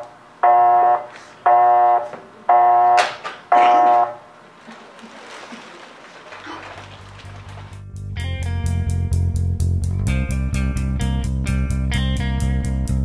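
Mobile phone sounding four steady electronic beeps, about one a second, the tone of a call that has been cut off. After a short lull, music comes in: a bass line first, then plucked guitar notes from about eight seconds in.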